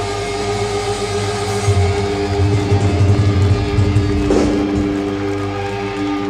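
Heavy metal band playing live, heard on an audience bootleg recording: distorted electric guitars and bass hold long sustained notes as a song draws to its close, with a sharp hit about four seconds in.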